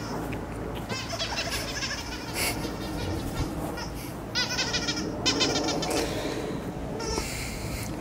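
A dog whining in several short, high-pitched bursts, the clearest a little after four seconds in and again after five.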